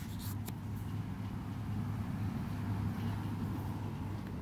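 A steady low hum under light rustling and a couple of small clicks from photobook pages being handled near the start.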